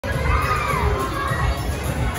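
A group of young children shouting and squealing together, one high squeal sliding down in pitch near the start, over a steady low rumble.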